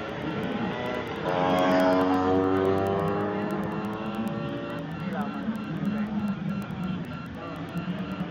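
A racing Vespa scooter's engine passing close by at speed, loudest from about one to two seconds in, its pitch dropping as it goes past and then fading. Voices follow.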